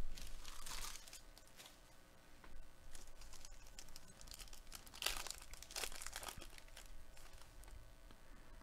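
Foil trading-card pack wrapper crinkling and tearing as it is ripped open by hand, in two main bursts: a short one near the start and a louder one about five seconds in, with light rustling between.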